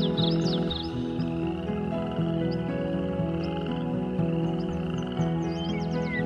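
Slow ambient music with long held notes, layered with a chorus of croaking frogs. Brief high bird chirps come in during the first second and again near the end.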